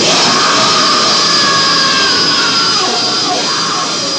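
Live rock band playing loud and distorted. The drum beat stops at the start, and the band's sound is held as one sustained wash, with some pitches sliding downward in the second half.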